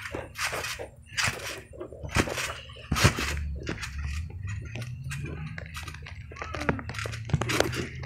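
A trampoline bouncing under a jumper: irregular thumps of the mat and springs, about one a second, over a low rumble.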